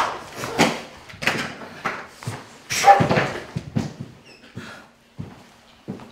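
Actors' grunts and scuffling in a staged fight: a rapid series of short thumps and effortful grunts, thinning out and going quieter for the last second or so.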